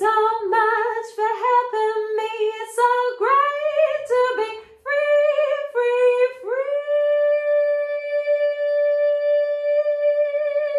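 A woman singing unaccompanied: a run of short notes, then from about two-thirds of the way in one long high note held with vibrato.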